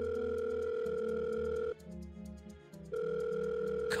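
Telephone ringback tone heard from the caller's end: two rings of about two seconds each, about a second apart, with the call going unanswered. Soft background music runs underneath.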